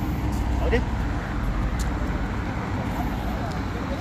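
Steady road traffic noise from a busy multi-lane city road, with most of its energy low down.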